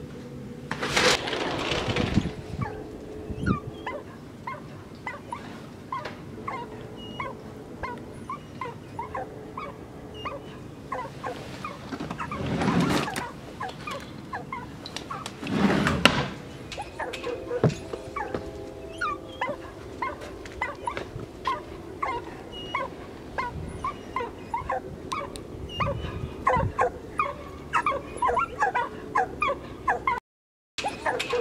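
Dogs whimpering and yipping in many short, rising cries that come more and more often toward the end. A few louder bursts of noise stand out about a second in, about thirteen seconds in and about sixteen seconds in.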